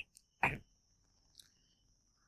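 Mostly quiet, with one brief, faint throat sound from the lecturer about half a second in, right after a cough. A faint steady high hiss sits underneath.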